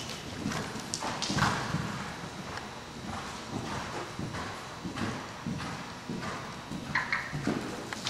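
A horse cantering on soft dirt arena footing: a steady, regular run of dull hoofbeats.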